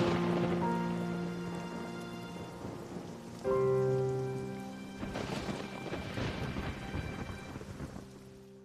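Rain falling steadily with thunder rumbling, swelling near the start and again about five seconds in, under slow sustained background music.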